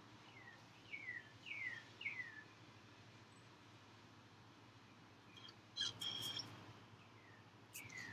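Faint bird song: a run of four short whistles, each falling in pitch, about a second in, then a brief sharper call around six seconds.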